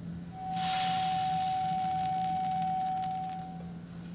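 Electrodynamic shaker driving a metal beam at its fifth natural frequency, about 753 Hz: a steady single tone that starts about half a second in and stops shortly before the end. Over it, a hiss of salt grains bouncing on the vibrating beam as they are thrown off the moving parts and gather along the node lines.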